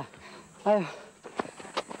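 A man's short laugh with a falling pitch, then two faint knocks near the end.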